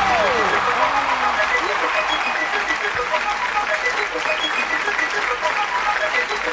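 Large studio audience applauding and cheering, a dense steady clapping with voices calling out, one falling whoop near the start.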